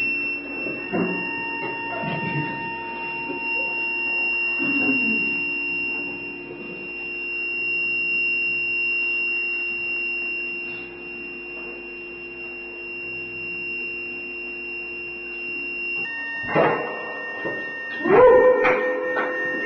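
A drone of several steady held tones, one high and piercing over a cluster of lower ones, with a few short sounds in the first five seconds and a louder burst of sound near the end.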